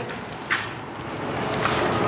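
A heavy iron slave neck lock and chain being handled and settled around a person's neck: metal shifting and rubbing against clothing, with a sharp clink about half a second in.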